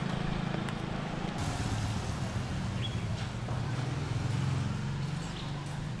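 Quiet street ambience with a steady low vehicle engine hum and a few faint clicks.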